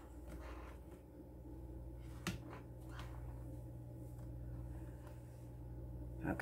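Light clicks and taps of hands handling a silicone soap mould and soap embeds, with one sharper click a little over two seconds in, over a faint low steady hum.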